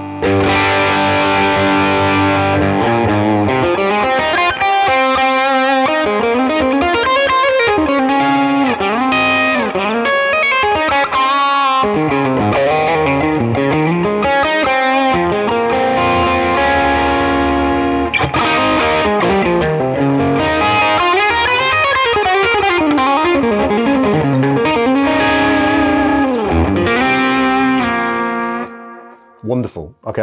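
Ibanez electric guitar played through the Neural DSP Tone King Imperial MkII amp model's lead channel: fluid single-note lead lines with bends and slides in a lightly driven tone. With the mid-bite control turned all the way down, the tone is rounded, with less grit in the midrange. The playing stops shortly before the end.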